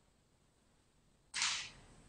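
Near silence, then about a second and a half in a single short hissing swish of noise that quickly fades out.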